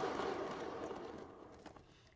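A hand-spun wooden turntable carrying a wet acrylic pour painting whirs on its bearing, slowing and fading away over about two seconds.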